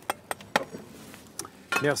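Light clinks of kitchen utensils against a saucepan: three sharp taps in quick succession, then one more about a second and a half in.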